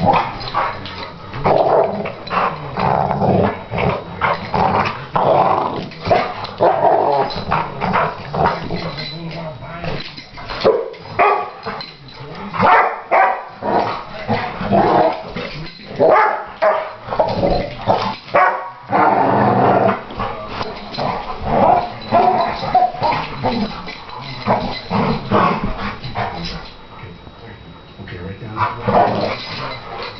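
Two dogs play-fighting, growling and barking at each other in repeated bursts, with a brief lull near the end.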